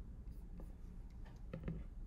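Faint scattered clicks and taps over a low steady hum, with a brief faint vocal sound about a second and a half in.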